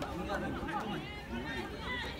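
Several voices shouting and calling out at once during a rugby match, indistinct and overlapping, with chatter beneath.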